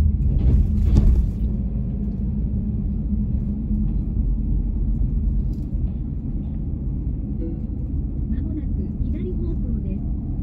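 Steady low rumble of a Nissan X-Trail driving slowly, heard from inside the cabin, with a couple of heavy thumps in the first second.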